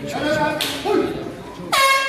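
Spectators shouting, then a loud air horn blast starts suddenly near the end: one steady, unwavering tone.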